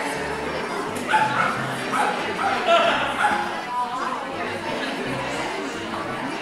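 A dog barking several times, clustered between about one and three and a half seconds in, over background music with a steady repeating bass line.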